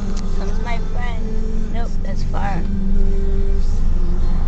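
Car interior noise while driving: a steady low road and engine rumble, with a few short voice sounds over it about a second in and again around two seconds in.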